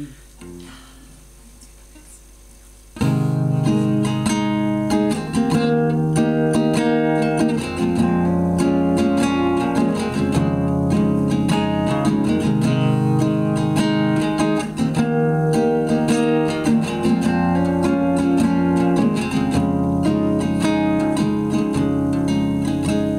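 Acoustic guitar starting about three seconds in and playing a song's instrumental introduction, with many quick picked and strummed notes and no singing yet.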